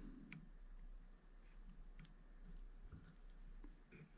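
Near silence with a few faint clicks of handling noise as thread is wrapped from a bobbin onto a hook held in a hand vise.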